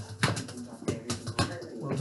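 A football being passed back and forth along a hallway with one-touch kicks: a handful of sharp knocks as the ball is struck and strikes the hard floor. A laugh comes near the end.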